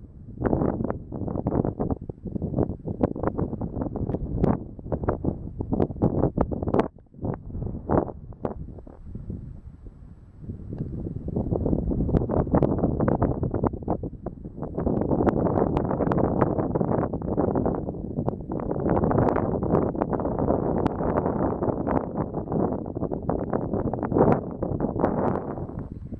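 Gusty wind blowing on the camera microphone, a loud, uneven rumbling rush that dips for a few seconds about seven seconds in and then rises again.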